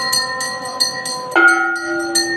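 Brass temple hand bell rung steadily during aarti, about four strokes a second. Under it are held musical notes, which change sharply to a louder, lower note near the end.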